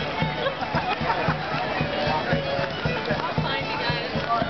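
Live folk dance music with a steady beat and held melody notes, over a crowd's chatter.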